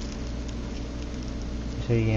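A steady low hum with a faint hiss behind it, with no distinct handling or cutting sounds; a voice starts right at the end.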